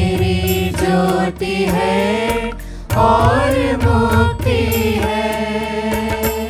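Church choir singing in Hindi with electronic keyboard accompaniment, voices held over a steady bass. The voices drop out briefly a little over two seconds in while the keyboard bass holds, then the singing resumes.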